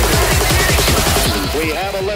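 Electronic dance music from a dubstep / hybrid trap mix: fast, dense kick-drum hits under a busy high end. Near the end the high end thins and wavering pitched sounds come in.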